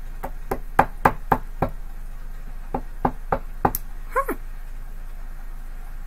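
A tarot card deck being rapped in two quick runs of knocks, about three a second, first six and then five. A brief squeak falling in pitch follows about four seconds in.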